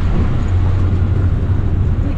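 Steady low rumble of a passenger vehicle driving along, heard from inside.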